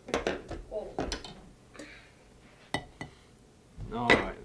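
Glass light bulbs and a fluorescent tube being handled on a tabletop: a quick run of light clinks and taps, then a sharper single click about two-thirds of the way through.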